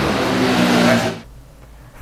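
Loud steady rushing background noise with a low hum underneath, cut off abruptly about a second in, leaving only faint background.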